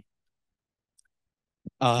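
Near silence for most of the pause, broken by a couple of faint, short clicks in its second half, then a man starts speaking with an 'uh' near the end.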